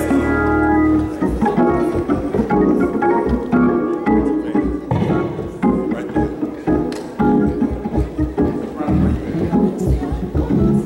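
Live church band music with organ: a chord is held for about a second, then the organ plays on over a steady beat as the song gets under way.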